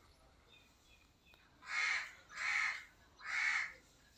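A bird giving three loud, harsh calls in quick succession, each about half a second long and a little under a second apart.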